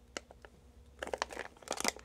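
Clear plastic zip-lock bag crinkling as it is handled, heard as faint scattered crackles that grow busier about a second in.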